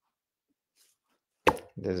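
A pause in a man's talk, nearly silent, then a short sharp click about a second and a half in as he starts speaking again.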